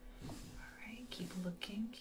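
A woman speaking softly in a breathy near-whisper, most of it in the second half, over a faint steady low hum.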